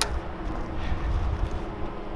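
Wind rumbling on the microphone, with a faint steady hum underneath and a single sharp click right at the start.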